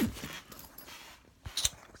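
Handling noise from a backpack being opened: a short rustle fading out at the start, then two light clicks about one and a half seconds in.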